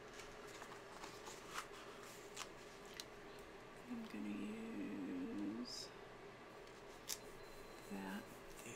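Faint, scattered clicks and light taps of metal tweezers and paper as a sticker is lifted and pressed onto a planner page, with a brief wordless murmur from a person about halfway through.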